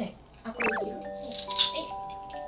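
Plastic toy food and dishes rattling in a short clatter about one and a half seconds in, over background music with long held notes.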